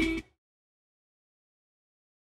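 Rapping over backing music cuts off abruptly a fraction of a second in, followed by digital silence.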